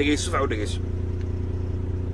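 A vehicle's engine running steadily with a low hum, heard from inside the cab. A man's speech stops within the first second.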